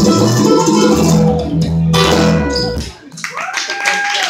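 Acoustic string trio of mandolin and acoustic guitars playing the closing chords of a song, which ring out and die away about three seconds in. A short voice call with a rising-and-falling pitch follows near the end.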